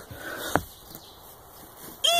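A single sharp click about half a second in, then faint handling noise: the metal pull-ring latch on a boat's carpeted deck hatch being flipped up by hand.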